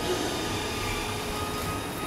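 Steady background hum and hiss with no distinct sounds: the room tone of a garage.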